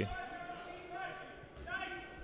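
A handball bouncing on the wooden floor of a sports hall, with faint players' shouts echoing in the hall.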